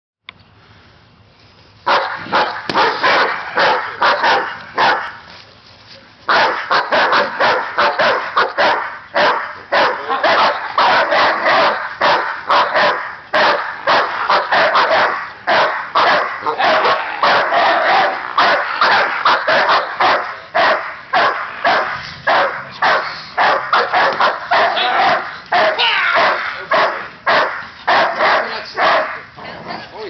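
German Shepherd and Mastiff/Lab mix barking hard and fast, several barks a second, in protection-dog training. The barking starts about two seconds in, breaks off briefly around five seconds, then runs on almost without a pause.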